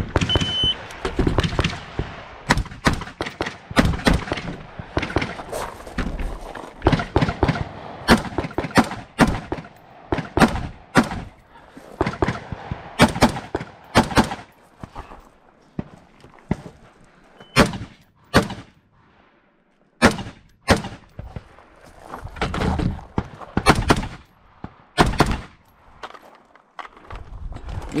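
An electronic shot timer's start beep, then a scoped semi-automatic rifle firing many sharp shots in quick pairs and short strings. Several brief pauses fall between the groups, while the shooter moves to the next firing port.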